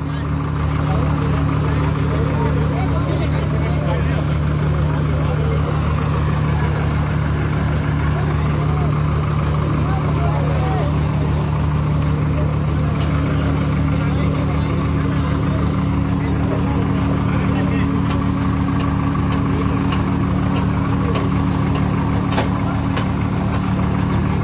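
A diesel tractor engine running at a steady speed with no revving, its low note holding even throughout, under crowd chatter.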